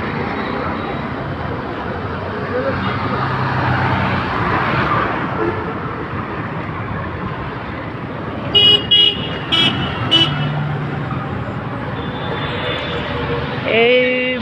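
Busy road traffic with vehicle engines running and tyre noise. About eight and a half seconds in, a vehicle horn gives several short toots in quick succession over about two seconds.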